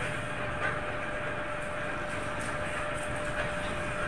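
Steady road and traffic noise from a moving vehicle carrying the camera, with a thin steady whine running under it.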